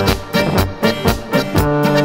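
Alpine folk band playing an instrumental march on trumpet, clarinet and diatonic button accordion, over a steady beat of about four strokes a second.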